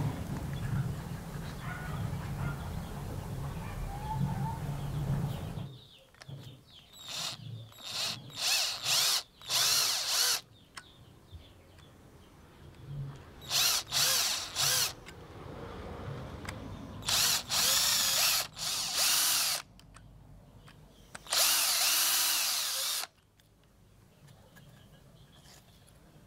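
A power drill run in short bursts, several in quick succession and then a few longer runs, each spinning up and stopping, with quiet gaps between. A steady low hum comes before the first burst and stops about six seconds in.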